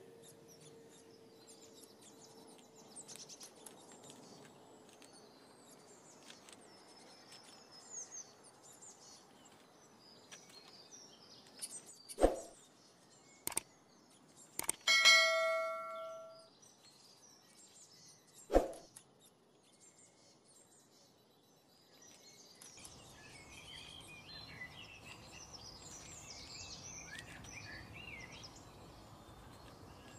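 Small birds chirping, with a metallic clang about halfway through that rings on for about a second and a half. Two sharp knocks fall a few seconds before and after it.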